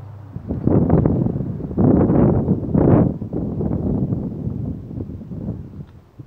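Wind buffeting the microphone in irregular rumbling gusts, strongest in the first half and easing off toward the end.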